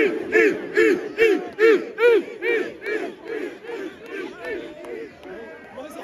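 A large crowd of young men chanting a short shout in unison, over and over at about five shouts every two seconds, growing fainter through the second half.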